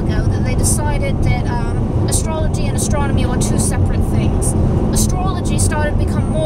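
A woman talking over steady road and engine noise inside a moving car's cabin.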